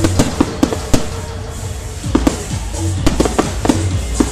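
Fireworks going off in a string of sharp, irregular bangs over loud music with a heavy bass.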